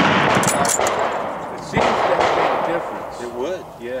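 A single bolt-action rifle shot about two seconds in, with a long echo that fades over a second or so; the echo of the shot before it is still dying away at the start.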